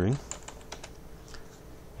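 Computer keyboard being typed on: an irregular run of light key clicks as a short word is entered.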